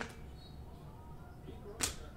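Quiet room with a faint hum, broken once near the end by a single short sharp snap of a trading card as a stack of basketball cards is flicked through by hand.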